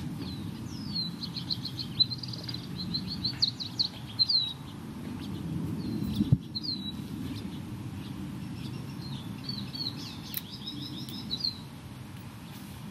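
Small songbird singing: two bursts of quick, high chirping trills, one in the first few seconds and another near the end, over a low steady rumble, with a single sharp click in the middle.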